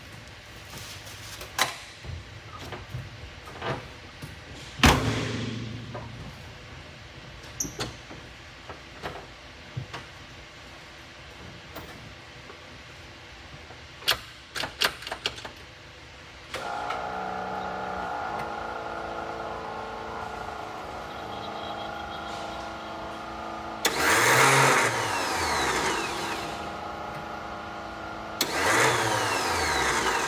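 Austin Mini Cooper S race car: a door shuts with a thud and switches click, then a steady electrical hum begins about halfway through. Near the end come two short tries at cranking, each a few seconds long, but the engine does not fire because the starter is stuck.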